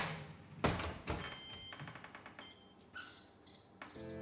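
A built-in Whirlpool electric oven's door is shut with a thunk about half a second in, followed by a smaller knock. Then come a run of short, high electronic beeps from its control panel as the knob is turned to set the baking time.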